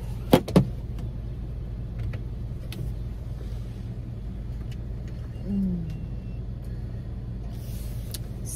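Car running at a standstill, a steady low hum heard from inside the cabin, with two sharp clicks in quick succession under a second in. About five and a half seconds in there is a brief falling voice-like sound.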